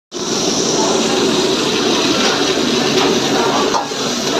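Gas wok burner running steadily under a wok, with aromatics frying and a metal ladle stirring, giving a few light clicks near the end.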